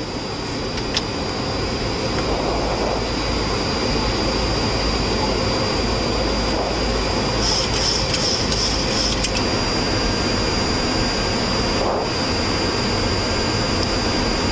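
Steady cockpit noise of a Boeing 737-700 on approach: air rushing past the nose and the jet engines running, with the landing gear down and the flaps extended.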